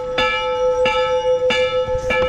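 Large metal temple bell struck over and over, about one stroke every two-thirds of a second, three strokes in all, each one ringing on under the next.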